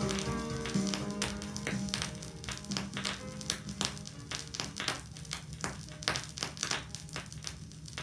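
The end of a song playing from a Melodiya vinyl record, fading out over the first two seconds or so, leaving the record's surface crackle and scattered pops as the stylus tracks on.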